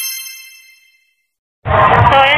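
A bright, bell-like chime sound effect rings out and fades away over about a second, then there is dead silence. Near the end, voices and street noise cut in suddenly.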